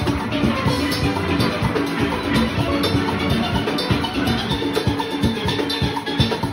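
A steel orchestra playing: many steel pans together over drums and percussion keeping a steady, dense beat, heard up close from among the pans.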